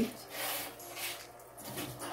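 Faint, soft rustling and scuffing handling noises, a few quiet brushes and rubs close to the microphone.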